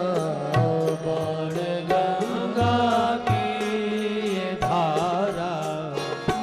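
Hindu devotional aarti music: a voice singing a hymn melody over held instrumental tones, with regular percussion strikes keeping the beat.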